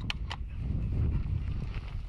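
Wind buffeting the microphone, a steady low rumble, with two short sharp clicks just after the start.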